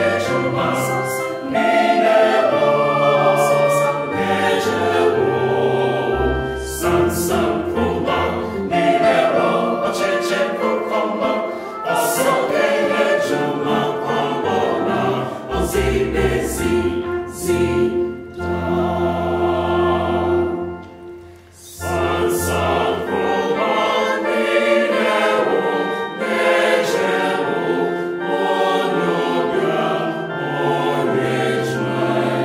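Mixed choir singing an Akan folk song in several parts, with deep sustained bass notes underneath. The sound thins and drops briefly about two-thirds of the way through, then the full choir comes back in.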